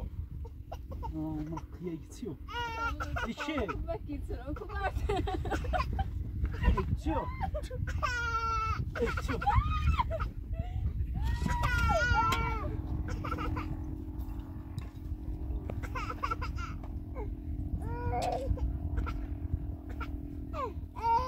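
Distressed human voices crying and screaming in a heated quarrel: several long, high-pitched wails that waver up and down, the loudest near the middle, with shorter shouts between them, over a steady low rumble.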